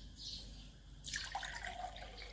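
Water poured from a drinking glass into an empty tall glass, the thin stream splashing faintly into the bottom, starting about a second in.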